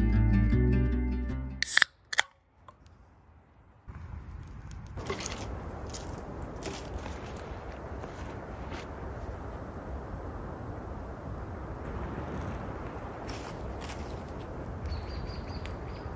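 Background music fades out with two sharp clicks, then after a short near-silent gap a steady outdoor hiss with occasional sharp pops from a small wood campfire.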